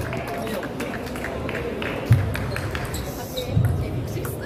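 Busy table tennis hall: scattered clicks of ping-pong balls striking bats and tables from the matches around, over crowd chatter. Two louder dull thumps about two seconds in and near the end.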